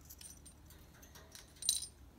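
Light metallic clicking and rattling from a wire parrot cage as an Indian ringneck parakeet steps across its wire floor, with one brief, louder jingle near the end.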